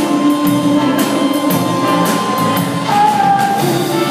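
Live dance band playing a slow foxtrot, with drum kit and long held melody notes; one note steps down in pitch about three seconds in.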